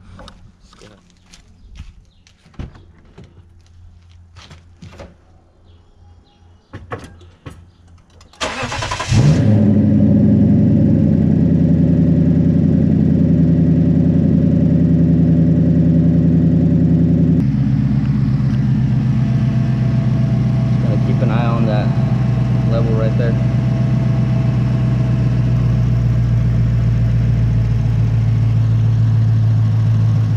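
Lexus IS F's 5.0-litre V8 starting up after several seconds of light clicks and knocks: it cranks briefly and catches, runs at a fast idle, then steps down to a lower, steady idle about halfway through. This is the first start after a new radiator and transmission cooler were fitted, run to check for coolant leaks.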